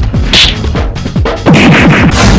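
Dubbed-in fight-scene hit sound effects: a short, sharp whack a little way in, then a longer, louder crashing hit in the second half. Under them runs electronic background music with a fast, steady drum beat.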